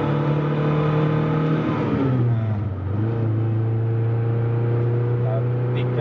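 Suzuki Escudo engine, fitted with an aftermarket 7Fire stroker CDI, heard from inside the cabin under hard acceleration: it runs high in second gear, the revs fall sharply about two seconds in at the upshift, and it then pulls steadily again at lower revs in third.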